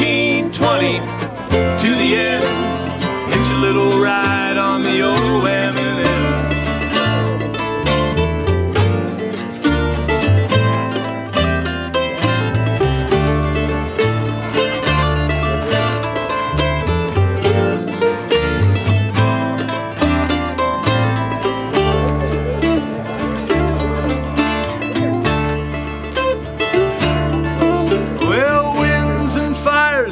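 Bluegrass band playing an instrumental break: mandolin and acoustic guitar picking over an upright bass keeping a steady beat.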